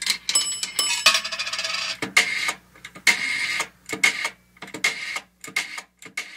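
Old telephone bell sound effect: short bursts of metallic ringing and clatter, about one a second.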